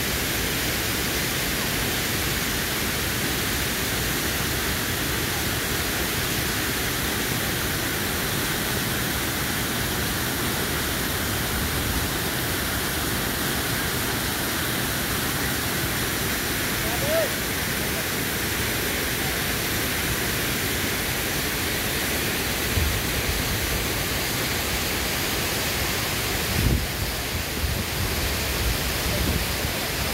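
Fast mountain river rushing over rocks in white-water rapids: a steady, even roar of water, with a few brief low bumps near the end.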